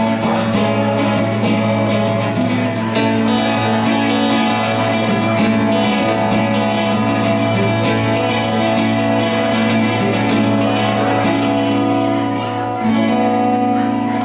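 Acoustic guitars strumming sustained chords in a live acoustic band performance.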